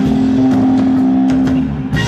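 Live rock band playing, led by an electric guitar through an amplifier, with drum hits underneath; a long held note rings and breaks off near the end.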